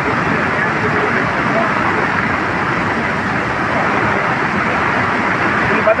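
Muddy floodwater rushing over a road and bridge in heavy rain, a steady loud noise of fast water. A man's voice starts at the very end.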